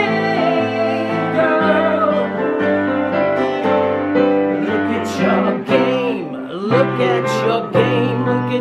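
Acoustic guitar and a Yamaha digital piano playing a song together, with a man's voice singing along.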